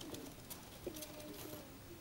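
A person's voice humming softly in a few held notes that step up and down in pitch, with a few faint ticks.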